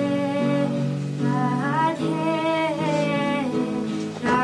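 Slow song: a voice holding long notes that slide up into pitch, over acoustic guitar.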